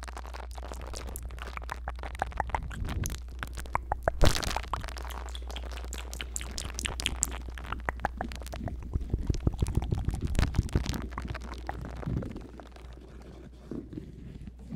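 A small brush rubbed and scratched directly on the silicone ears of a 3Dio binaural microphone, giving dense close-up crackling and scratching over a steady low hum. It eases off about twelve seconds in.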